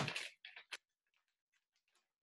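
A few faint clicks and light rustles as a hand touches a sheet of paper pinned to a door, with a sharper click a little under a second in.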